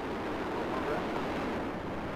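Steady rushing roar of Space Shuttle Discovery climbing just after liftoff, its twin solid rocket boosters and three main engines firing.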